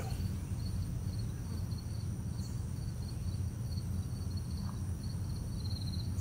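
Insects chirping in an even, high-pitched pulsing rhythm over a steady low outdoor rumble.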